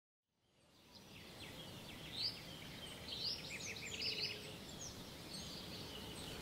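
Faint birdsong fading in after about a second of silence: scattered high chirps, quick rising and falling calls and a short rapid trill over a steady background hiss.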